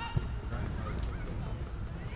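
Faint shouts and calls from players on a soccer field over a steady low rumble, with one sharp thump just after the start.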